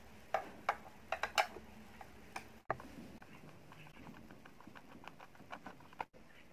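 Steel screwdriver clicking against the screws and plastic case of an old telephone as its base screws are undone: a few sharp clicks in the first second and a half, then lighter, quicker ticking.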